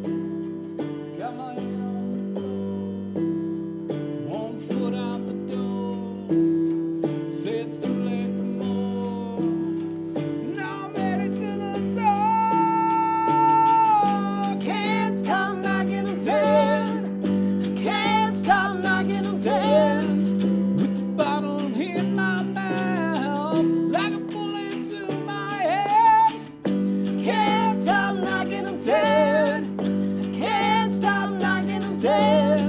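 Live duo on hollow-body electric guitar and keyboard playing a song; a singing voice comes in about ten seconds in and holds one long note a couple of seconds later.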